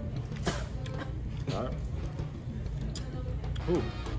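Noodle soup being slurped and eaten, with a couple of sharp clicks of utensils against a bowl, over steady background music.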